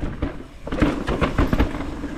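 Mountain bike riding down a rocky dirt trail: a rapid, irregular run of knocks and rattles as the tyres and bike hit rocks and bumps, over a low rumble, with a brief lull about half a second in.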